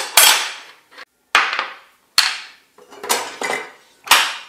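Metal parts clacking onto a table saw's metal table top during a blade change: the spanner, arbor nut and flange being set down. There are four sharp clacks about a second apart, each ringing briefly.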